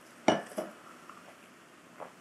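A quick sip of freshly brewed hand-drip coffee from a small ceramic tasting cup. One short, sharp sound comes about a quarter second in, with a fainter one just after.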